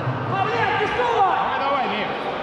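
Several voices calling out at once, overlapping and echoing in a large sports hall.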